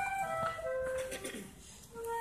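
Solo flute playing held notes in a slow phrase. The phrase fades out a little past halfway, with a short gap before the next note comes in at the end.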